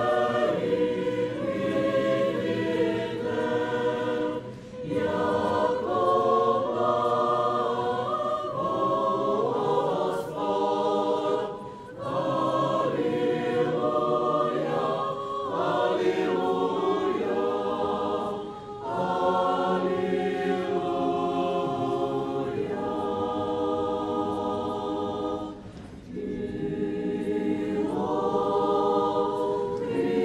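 Orthodox church choir singing a communion chant unaccompanied, in phrases of about seven seconds with brief pauses between them.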